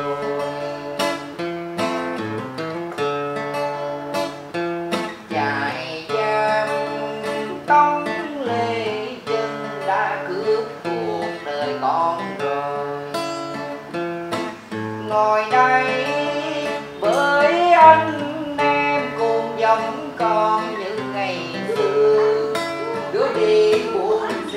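Acoustic guitar accompanying a Vietnamese song, with a melody that bends and wavers in pitch and a voice singing along at times.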